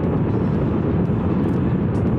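Honda CRF1000 adventure motorcycle ridden at road speed: a steady rush of wind on the microphone over the engine and tyre noise.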